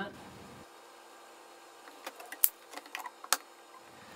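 A handful of light clicks and knocks in the second half as a Festool Domino joiner is handled and turned over on a workbench.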